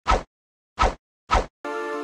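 Three short, punchy sound-effect hits in quick succession, then outro music with sustained chords comes in near the end.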